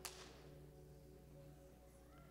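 Near silence: a faint background keyboard pad holding a few steady notes, with a short click right at the start.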